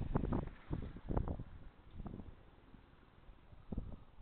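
Wind buffeting the camera's microphone in uneven low gusts, heaviest in the first second and a half, then dying down to a faint hiss with one more gust near the end.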